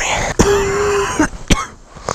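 A man with a sore, sick throat clearing it with one long, rasping hack lasting under a second, then a single sharp click about a second and a half in.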